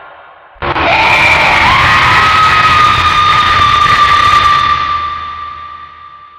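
A horror sting: a sudden loud shriek over a harsh burst of noise, starting under a second in. The shriek slides up and then holds one high pitch for about four seconds before fading out near the end.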